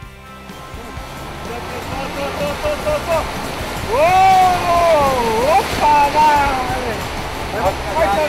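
River rapids rushing, the whitewater noise growing louder over the first few seconds as the raft runs into them, with people yelling and whooping over it around the middle.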